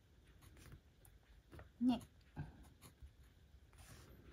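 Fountain pen nib scratching softly on planner paper in short strokes as words are written out by hand.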